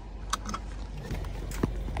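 Cargo van's engine idling with a steady low rumble, with a few light clicks or taps at intervals.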